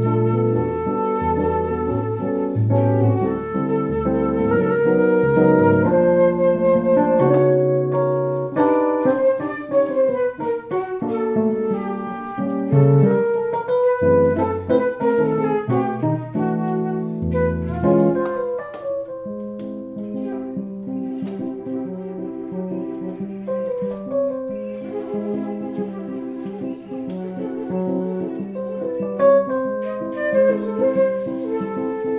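Flute and Yamaha S03 keyboard duo playing an instrumental samba-jazz tune: the flute carries the melody over the keyboard's chords and bass notes. About two-thirds of the way through, the low bass notes drop out and the keyboard keeps up a repeating chord rhythm under the flute.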